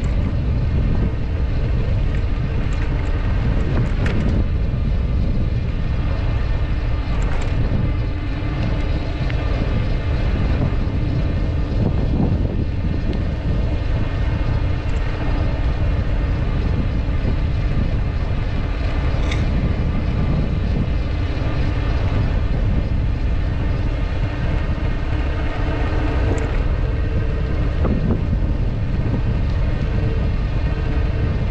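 Steady rush of wind buffeting a bike-mounted action camera's microphone, mixed with tyre noise on the path while riding, with a few faint brief ticks.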